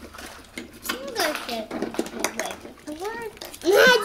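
Light clicks and clatter of plastic Kinder Surprise toy capsules being handled and opened on a hard table, among short bits of children's voices. A loud child's voice comes in near the end.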